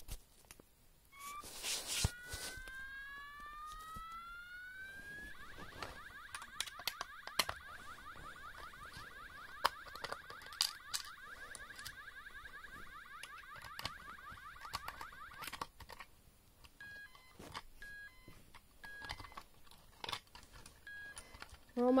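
Electronic fire alarm sounder tones: a few rising sweeps, then about ten seconds of a fast warbling tone that stops abruptly, then short spaced beeps. Small clicks and knocks from the cover being unscrewed sound over it.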